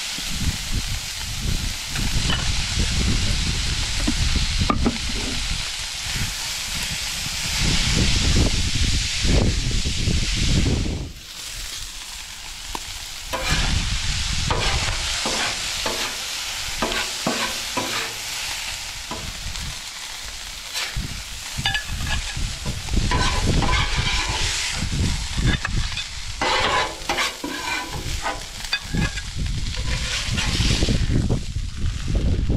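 Pork chops and rice frying on a Blackstone flat-top griddle, with a continuous sizzle. A metal spatula scrapes and clicks against the steel plate as the food is stirred and turned, most often in the second half.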